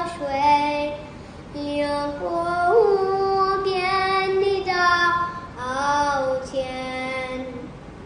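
A young girl singing a Mandarin song in phrases with long held notes.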